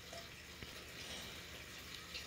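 Faint steady background hiss of room tone, with no distinct sound event.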